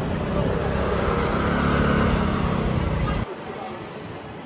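A car driving off at low speed: a steady engine hum that swells and then eases as the car moves away. It cuts off suddenly a little after three seconds, leaving quieter street background.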